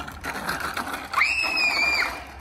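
A loud, high-pitched squeal that starts a little over a second in, sweeps sharply up in pitch and is then held steady for under a second before cutting off.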